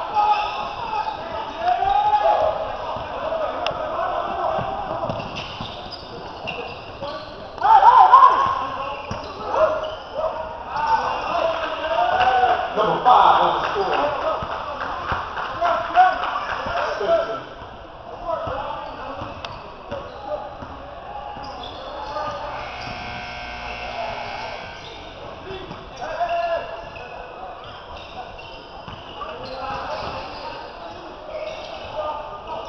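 Basketball game: many voices shouting from players and spectators, with a basketball bouncing on the hardwood court. The shouting jumps suddenly loud about eight seconds in and dies down after about eighteen seconds.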